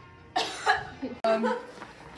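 A young person's voice in two short bursts about a third of a second in. A sharp click and a brief dropout come a little past one second, where the picture cuts, and then a spoken "No."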